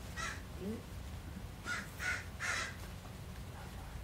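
A crow cawing: one short call at the start, then three caws in quick succession about two seconds in.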